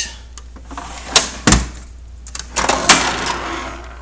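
Craftsman steel toolbox drawers being shut and opened: a sharp click, then a heavy metal clunk about one and a half seconds in, then a drawer sliding on its runners with rattling contents and more knocks near three seconds.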